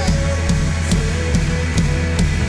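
Live worship band playing, a drum kit keeping a steady beat under guitar and keyboard.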